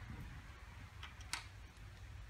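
Two light clicks about a second in, the second louder, from the valve spring pressure tester being handled against the rocker arm of a small-block crate engine, over a faint low hum.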